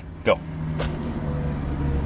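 Low, steady motor-vehicle engine drone that grows louder about half a second in and then holds, with two short clicks just before it swells.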